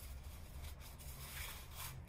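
Faint rustling of a necktie's fabric being pulled and worked into a knot by hand, a little louder in the second half, over a low steady hum.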